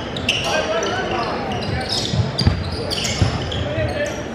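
Basketball game sounds in a large echoing gym: sneakers squeaking on the court and a ball bouncing a few times about two seconds in, over crowd chatter.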